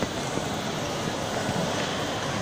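Steady ambient noise of a busy shopping-mall hall: a constant, even hum of background sound with no distinct events.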